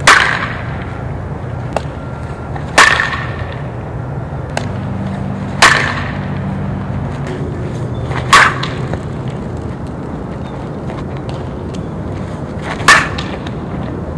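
Softball bat hitting tossed softballs in batting practice: five sharp cracks, each with a brief ring, about three seconds apart, the last after a longer pause.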